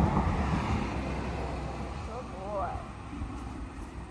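A pickup truck passing on the road, its noise loudest at the start and fading away over the next couple of seconds. A brief wavering, pitched sound follows about two seconds in.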